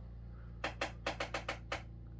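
A quick run of about seven short, sharp clicks, roughly six a second, lasting about a second, over a faint steady hum.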